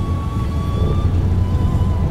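Steady low rumble of city street traffic, with a faint steady tone above it.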